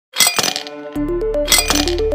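Ice cubes dropping into a tall glass, clinking against the glass and each other in two quick rattling bursts, one at the start and one about a second and a half in. Background music with a steady beat and a stepping melody comes in about a second in.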